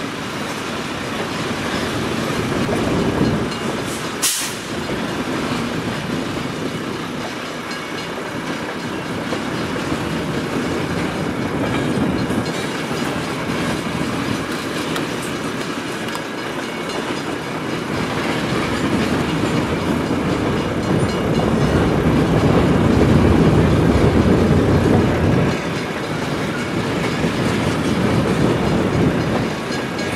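Freight train of tank cars rolling past, with steel wheels clicking over the rail joints in a continuous rumble that grows louder about two-thirds of the way through. A brief sharp high-pitched noise comes about four seconds in.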